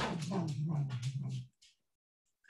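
A drawn-out vocal sound, falling in pitch, that stops about one and a half seconds in, heard over a video call.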